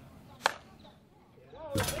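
A single sharp crack of a bat striking a softball, about half a second in.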